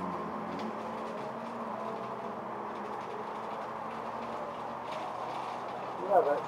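Steady vehicle engine hum.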